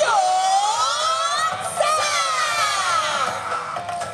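Yosakoi dancers' long drawn-out shout in unison, its pitch dipping and rising, over the dance music.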